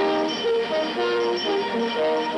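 Cartoon score music coming in suddenly: a brisk melody of short notes over held chords.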